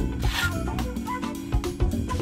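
Instrumental background music with a steady repeating bass line and short note strokes above it.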